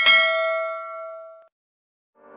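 A single bell-ding sound effect for the notification-bell click of a subscribe-button animation. It is struck once and rings with several overtones, fading out over about a second and a half.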